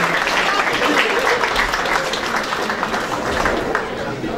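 Audience applauding steadily, easing off a little near the end.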